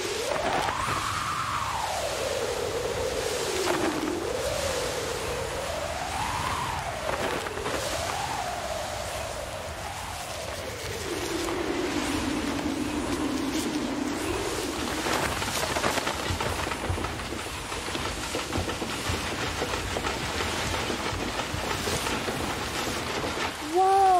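Storm sound effect of hurricane wind and rain: a whistling wind that rises and falls in pitch over a steady rush for about the first half. After that the whistle fades and the rushing wind and rain go on, with gusts.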